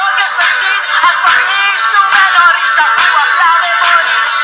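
Greek pop song: a lead vocal sings a melody over a full band backing with a regular beat.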